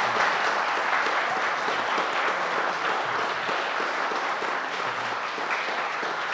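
Audience applauding, a steady clatter of many hands clapping that eases off slightly near the end.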